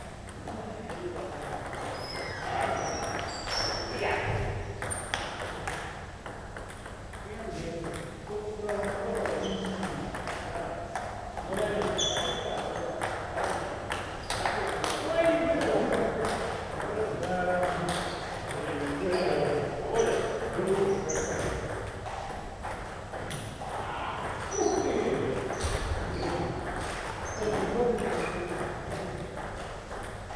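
Table tennis ball clicking off paddles and the table in rallies, in sharp irregular knocks, with people talking throughout.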